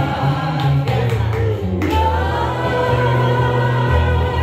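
A live song with guitar accompaniment and a crowd singing along together as a chorus.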